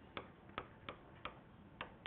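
Stylus tapping and clicking on an interactive whiteboard's surface while symbols are written: about five faint, sharp, unevenly spaced clicks.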